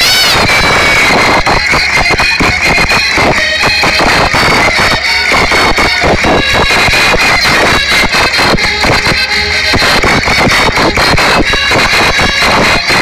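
Portuguese folk-dance music, loud and dense, with a held high melody line over a quick, steady beat.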